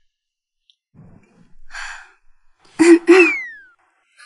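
A person's breathy sigh about halfway through, followed near the end by a short, loud burst of voice with a laugh.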